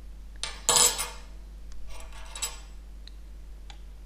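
Small metal parts clinking and clattering as they are handled on a model steam traction engine while its boiler fittings are put back after filling. The clatter comes in two bursts, the louder about a second in, followed by a few light ticks.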